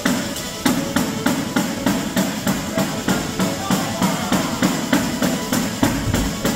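Southern Italian folk band playing a fast dance tune in the pizzica/tarantella style. Tamburelli (frame drums with jingles) beat a driving rhythm of about four strokes a second under the violin.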